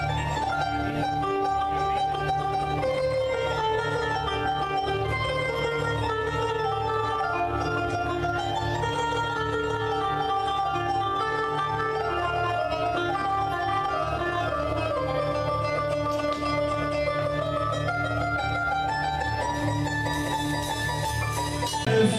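Arabic band music: a plucked string instrument plays a winding melody over steady low backing.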